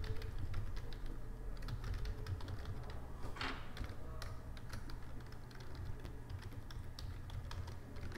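Typing on a computer keyboard: a quick run of key clicks as a line of text is typed out.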